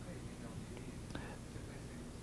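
A quiet pause between speech: steady low hum and faint hiss of studio room tone, with one faint short sound about a second in.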